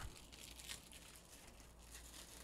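Near silence: room tone with a steady low hum and faint rustling.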